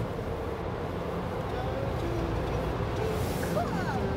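Automatic car wash running, heard from inside the car's cabin: a steady noise from the spinning brushes and spraying water on the car, with a brief hiss of spray a little after three seconds.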